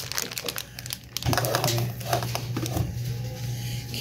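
Plastic candy bags crinkling under a hand for about the first second, followed by faint voices over a steady low hum.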